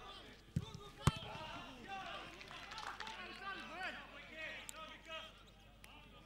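Players shouting and calling to each other across the pitch, several voices overlapping. About half a second in there is a thud of a football being kicked, and about a second in there is a second, louder kick.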